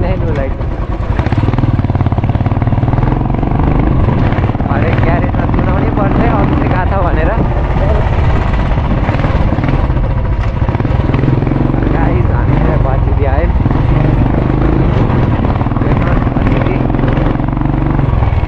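Royal Enfield motorcycle engine running steadily under way, heard from the rider's seat, with voices talking over it.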